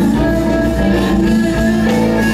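Live rock band playing through an outdoor stage PA, heard from a distance, with electric guitar over bass in a warm-up run of a song at a soundcheck.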